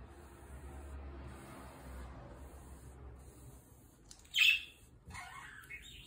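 French polishing rubber wiped in repeated strokes over a wooden panel, a soft swish about once a second. About four and a half seconds in there is a short, louder high chirp, followed by a few brief gliding squeaks.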